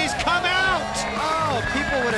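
Excited voices whooping and exclaiming, several rising-and-falling cries overlapping, over background music with steady low notes.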